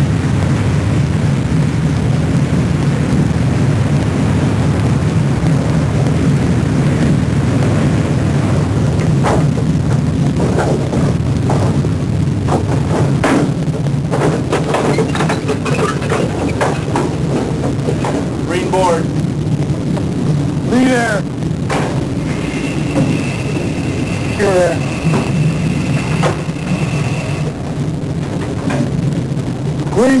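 Submarine diving, as in a film soundtrack: a continuous low rumble with scattered metallic clanks and knocks. Past the middle a steady high tone sounds for about five seconds.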